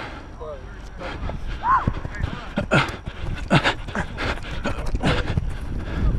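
Running footfalls on grass and a runner's heavy breathing, close to a head-mounted camera, with irregular thumps and a low wind rumble on the microphone.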